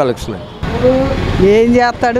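Speech: interview talk over street background noise, with an abrupt cut about half a second in to a second, higher voice.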